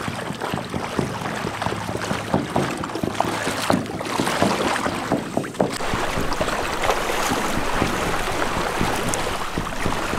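Several people wading through shallow river water, their legs and feet splashing irregularly.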